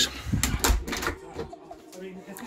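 A short vocal sound, then a series of knocks and clicks with a heavy low thump a little under a second in.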